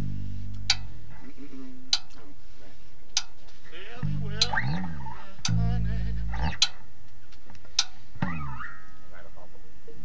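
Electric bass guitar playing a few low held notes between songs, with sharp clicks repeating at a steady pace about every second and a quarter, and some gliding, warbling higher sounds in between.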